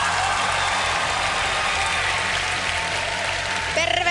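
Studio audience applauding steadily, with faint music beneath it.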